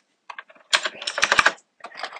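Computer keyboard being typed on: a run of quick keystrokes, densest about a second in.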